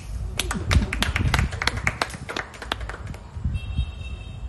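Applause from a small audience: scattered hand claps that die away about three seconds in.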